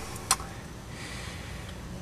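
A pause with a faint, steady background hiss and a single small click about a third of a second in.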